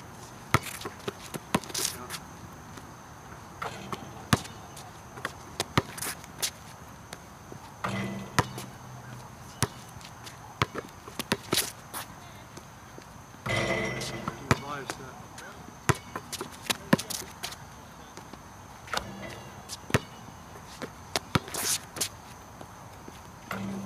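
A basketball bouncing on an outdoor hard court, with sharp thuds at an irregular pace as it is dribbled and passed back and forth. A few brief stretches of voice come in between.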